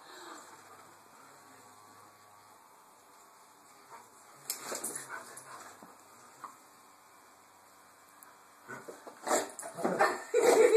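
Doberman whimpering and yipping in short bursts, once about four and a half seconds in and again near the end as he lunges for a treat, over a faint low hum.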